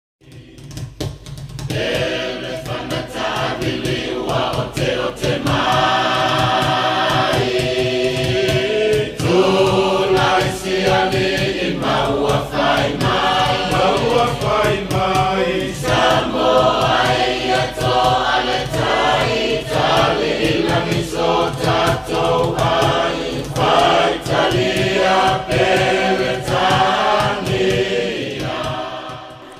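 A choir of mixed voices singing together over a steady beat, fading in over the first two seconds.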